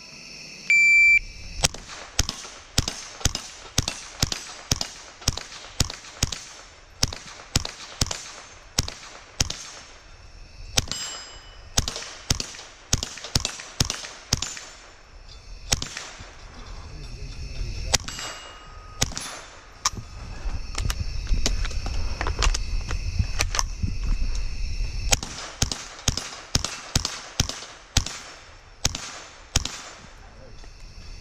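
A shot timer beeps about a second in. A .22 LR Beretta 87 Target pistol then fires dozens of rapid shots in quick strings, with steel plates ringing when hit.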